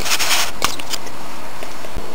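Handling noise of a plastic model horse and its small tack being fiddled with as a strap is taken off: a short rustle at the start and a sharp click about two-thirds of a second in, over a steady background hiss.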